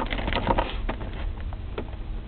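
Handling noise of cables and the plastic centre console: a few small clicks and rustles over a steady low rumble.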